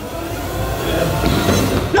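A rushing noise swell that grows steadily louder and brighter over two seconds with a low rumble underneath, like an edited suspense riser laid over background music.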